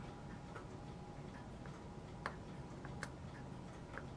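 Faint small ticks of fine tweezers picking at strips of model railing on a sheet of paper, with two sharper clicks about two and three seconds in.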